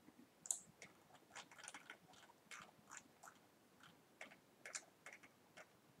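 Faint, irregular clicks and ticks of a computer mouse as the user scrolls and clicks through a list of parts.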